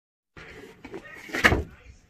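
Cardboard model-kit box being handled and its lid lifted off, with rustling and a sharp knock about one and a half seconds in.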